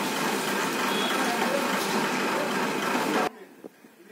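Steady loud rushing noise of a borewell-cleaning compressor rig running during desilting, which cuts off suddenly near the end.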